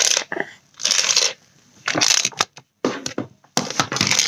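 Rustling, crunching handling noise close to the microphone, coming in irregular bursts about once a second.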